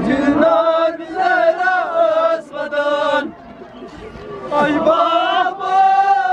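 Male voices chanting a nauha, a Shia mourning lament, together in a drawn-out melody. The chant drops away for about a second and a half midway, then resumes.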